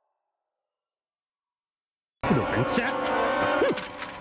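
Near silence for about two seconds, then a sudden loud entry of dramatic drama-soundtrack music and effects, dense and full of sweeping glides.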